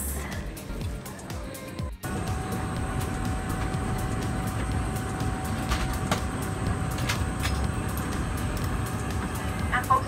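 Steady hiss and rumble of an airliner cabin during boarding, from the aircraft's air system, with a constant tone of fixed pitch running through it. It starts suddenly about two seconds in.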